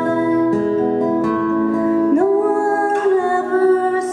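A woman singing live with acoustic guitar accompaniment; about two seconds in her voice slides up into a long held note.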